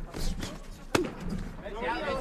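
A single sharp smack about a second in, a boxing glove punch landing, over low background noise.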